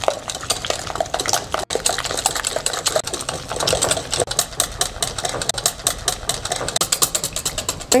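Wire whisk beating a thin egg-and-milk French toast batter in a glass bowl: a rapid, steady rattle of the wires against the glass as the batter is mixed to work out the lumps.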